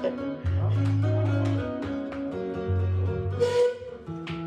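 Electric bass and electric guitar playing together live, the bass holding long low notes under quick plucked guitar lines. A short hiss cuts in near the end.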